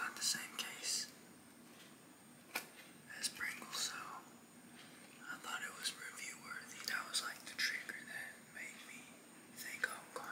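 A man whispering close to the microphone in short phrases, with a few sharp clicks in the first seconds.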